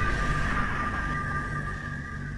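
Tail of a music label's logo sting: the low rumble of a boom dying away under two held high tones, fading steadily.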